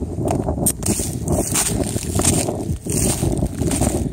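Footsteps crunching through dry fallen leaves at a walking pace, with continuous rustling and crackling between steps.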